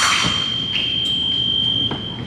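Electronic fencing scoring machine sounding a steady high tone as its lights register a touch, cutting off near the end. Right at the start there is a brief clatter of blades and footwork knocks from the lunge.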